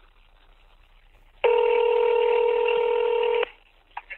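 Telephone ringback tone heard over a phone line: one steady ring about two seconds long, starting about a second and a half in, over faint line hiss, as the outgoing call waits to be answered.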